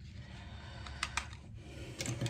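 Handling noise from a plastic electric head shaver being turned over in the hands, with two light plastic clicks about a second in, close together.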